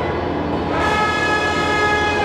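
Orchestral background music: a sustained brass chord, moving to a new held chord about a second in.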